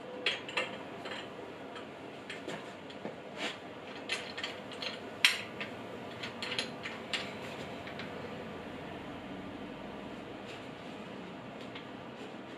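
Light clicks and knocks of a plastic pipe being handled and set into the clamp of an angle grinder stand, scattered through the first eight seconds with the loudest about five seconds in, then a faint steady hum.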